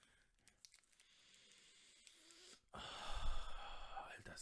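A long, deep sniff through the nose, smelling a bar of Swiss chocolate held up to the face. After quiet, it starts suddenly near the end and is loud on the microphone.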